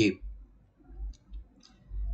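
A man's voice ends a word, then in the pause a few faint clicks sound about a second in and again near the end, typical of mouth and lip clicks between phrases.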